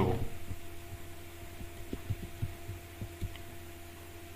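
A pause with no speech: a steady low hum in the background and a few faint, soft low knocks scattered through it.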